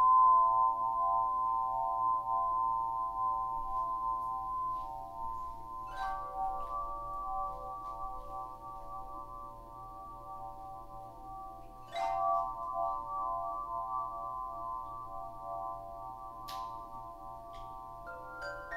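Sound-bath music: a cluster of several bell-like tones struck together about every six seconds, each cluster ringing on and slowly fading before the next strike.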